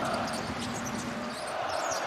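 Basketball arena crowd noise, a steady wash of the crowd, with faint scattered ticks of ball and shoe sounds from the court.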